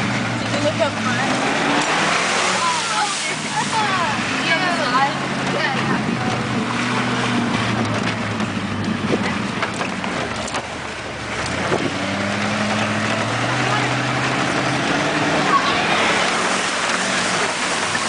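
A 4x4's engine revving hard as it ploughs through deep mud and standing water, heard from inside the cab, with the noise of water and mud splashing against the body and windshield. The engine note rises and falls, dips briefly just past the middle and then climbs again.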